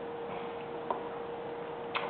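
A carved wooden figure set down on a tabletop board with one light click about a second in, and a fainter click near the end, over a steady electrical hum.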